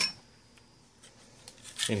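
A single sharp click with a brief high metallic ring at the start, then near silence with a couple of faint ticks; a man starts speaking near the end.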